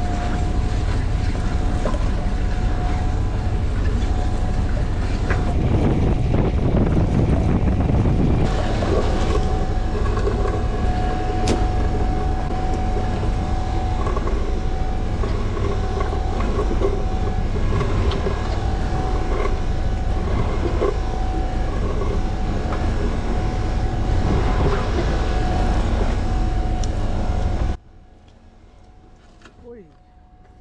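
A powered net hauler and the boat's engine running steadily as a fishing net is hauled aboard, with a low rumble, a steady whine and water splashing off the net. The sound cuts off suddenly near the end.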